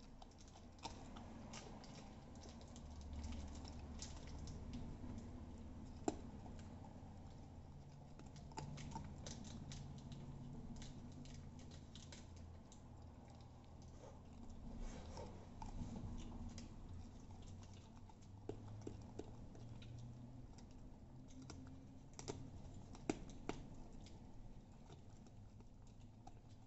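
Corgi puppy gnawing a raw chicken leg: faint, irregular clicks and crunches of teeth on meat and bone, a few sharper ones near the end.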